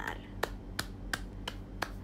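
A run of five sharp, evenly spaced clicks, about three a second.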